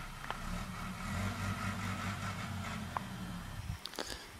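An engine idling with a low, steady rumble, with a faint click just after the start and another about three seconds in.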